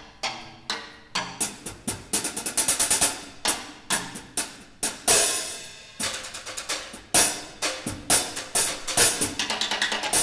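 Drum kit played with sticks: quick, uneven strokes on snare, toms and bass drum, with a cymbal ringing out about five seconds in.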